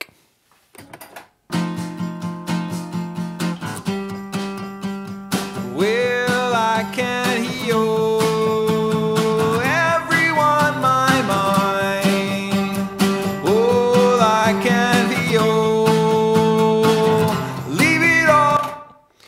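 Strummed acoustic guitar and a singing voice played back from tape on a Sansui WS-X1 6-track cassette recorder, with its built-in digital reverb set to the third program. The guitar starts about a second and a half in, and the voice joins a few seconds later with long held notes.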